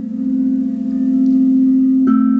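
Crystal singing bowl ringing on in a steady low hum with a few higher overtones and no new strike. The hum dips slightly just after the start, then swells back about a second in.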